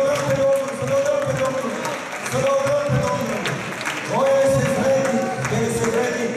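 Worship singing through a hall's sound system: a voice holding long notes, about a second each, with a short upward slide about four seconds in, over musical accompaniment.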